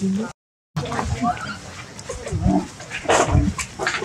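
Macaques calling: a string of short, rough, irregular calls and grunts. The sound drops out completely for about half a second shortly after the start.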